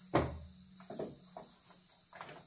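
A sharp knock on wood just after the start, then two lighter knocks around a second in, from hands working on a wooden window frame. A steady, high insect chorus sounds underneath.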